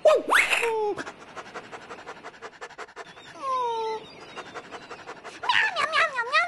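Fast, rhythmic cartoon panting of an animal character, several short pants a second, with a brief falling whine about halfway through. A high cartoon vocal cry comes just before the panting, and cartoon animal calls start again near the end.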